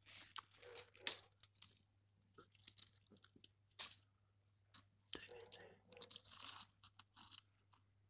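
Quiet, irregular crackling and rustling of dry leaf litter, twigs and soil close to the microphone, in short bursts with a few sharp snaps.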